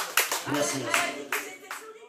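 Sparse audience applause dying away: a few scattered hand claps, growing fainter, with a voice heard briefly partway through.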